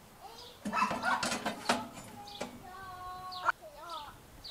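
Steel rack brackets clanking and knocking against the steel cooking chamber of an offset smoker as they are set in place, several sharp knocks about a second in. Birds chirp in the background.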